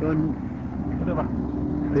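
A man speaking Arabic in short broken phrases over a steady low hum and background hiss.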